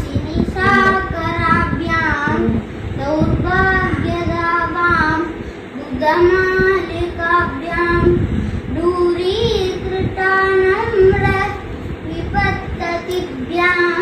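A child's voice chanting devotional verses in a sung melody, in phrases of a few held notes with short breaks between them.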